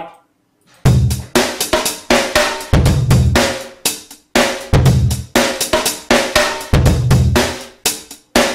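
Drum Lab sampled drum kit ('Raw' kit) playing its 'Aggressive Break' groove: a programmed breakbeat of kick, snare and hi-hats at 120 bpm. It starts just under a second in, with a heavy kick about every two seconds and busy snare and hat hits between.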